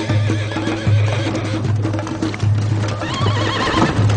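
A horse whinnying twice, a wavering call near the start and a louder one about three seconds in, with hoofbeats, over background music with a low pulsing note.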